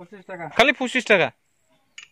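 A person's voice speaking briefly, stopping a little over a second in.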